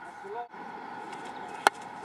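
A single sharp click about one and a half seconds in, over a steady outdoor background, with a brief vocal sound near the start.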